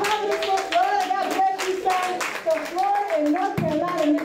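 A woman's voice through a microphone in long, drawn-out pitched phrases, with many handclaps striking along with it.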